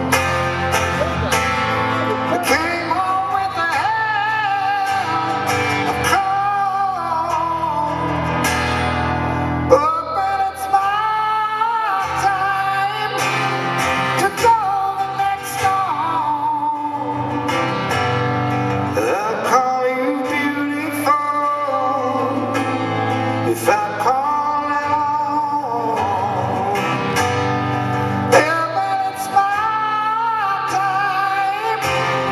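A man singing long, wavering held notes in a high rock voice over his own strummed acoustic guitar, performed live.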